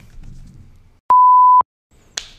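A single steady electronic censor bleep, a pure mid-pitched tone about half a second long, switched on and off abruptly about a second in.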